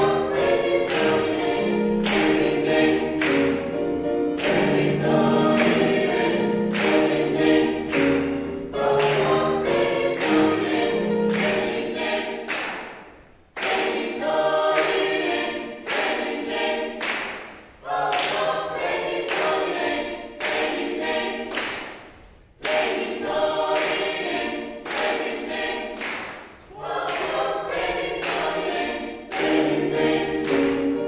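Mixed choir singing an up-tempo gospel song, with rhythmic handclaps on the beat. The singing breaks off briefly three times between phrases while the clapping keeps time.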